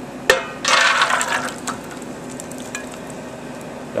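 A runny oatmeal-and-milk mixture poured from a bowl into a metal baking pan: a sharp clink a moment in, then about a second of wet splashing as the batter goes in, then a few light taps.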